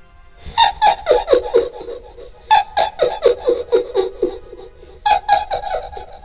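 A high, cackling laugh: three runs of quick falling 'ha-ha-ha' notes, each run lasting about two seconds, over a faint sustained music drone.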